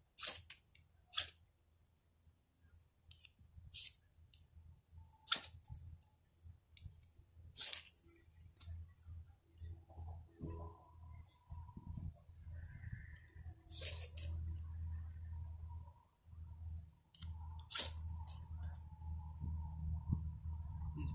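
A knife scraped down a ferrocerium firesteel rod, a series of about nine short, sharp rasping strikes spaced unevenly, throwing sparks into palm-fibre tinder that has not yet caught. A low rumbling noise builds under the strikes in the second half.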